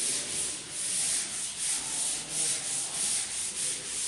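Board duster wiping a chalkboard, rubbing back and forth in repeated strokes to erase chalk writing.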